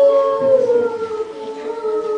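Children singing a song together, holding one long note that steps down slightly in pitch about half a second in.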